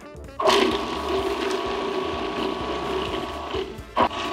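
Small electric food processor running, its blade chopping butter, shallot, anchovy fillets and garlic into a paste. The motor starts about half a second in, runs steadily with a hum, stops briefly just before the end and starts again.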